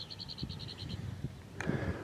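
A faint, high trill of evenly spaced short notes, about ten a second, from a distant animal, fading out about a second in; a single click near the end.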